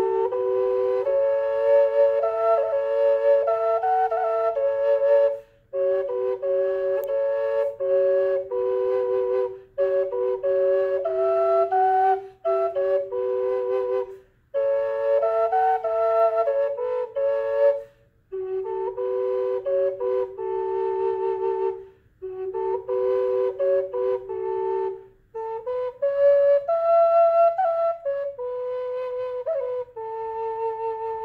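Native American G straight drone flute of western cedar playing a slow melody on one bore over a steady drone note held on the other, in phrases broken by short breath pauses.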